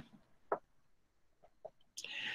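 Near silence: faint room tone in a pause between speech, with two or three faint, very short sounds about half a second and about a second and a half in.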